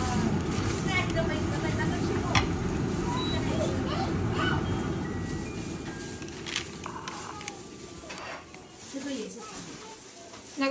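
Steady low whir of a kitchen fan beside an induction cooktop, easing off after about six seconds. Quiet talk runs under it, and there are a couple of light knocks as the fried rice cakes are handled.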